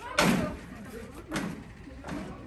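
A street door being opened: a loud knock a moment in as it is unlatched and pulled, then a second, softer knock a little over a second later.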